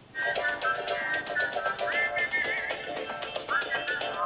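Short, bright TV-channel logo jingle: a high melody with small pitch slides and wobbles over a quick run of short plucked notes, put through the 'G Major 7' audio effect.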